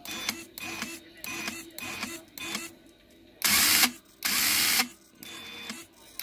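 RC crawler's rear-steering servo whirring in short, jerky bursts, then two longer, louder runs near the middle. It is twitching unbidden, a glitch the owner suspects may be a short.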